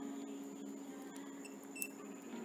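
A single short electronic beep from the MSU3 handheld veterinary ultrasound scanner's keypad near the end, as a button is pressed, over a steady low hum and a few faint clicks.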